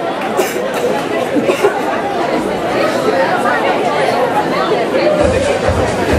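Many people talking at once: crowd chatter echoing in a large hall, with a low hum coming in near the end.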